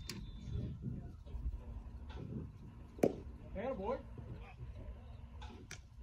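A pitched baseball smacking into the catcher's mitt: one sharp pop about halfway through, followed by a brief shouted call.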